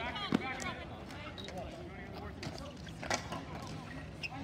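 Ball hockey play on a plastic sport-court surface: sharp clacks of sticks, one shortly after the start and one about three seconds in, over voices of players and onlookers and a short "oh" at the start.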